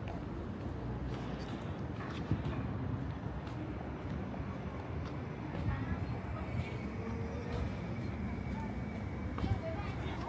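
City street ambience: a steady low traffic hum with footsteps on the pavement and faint voices of passersby. A faint, thin, steady high tone comes in about halfway through.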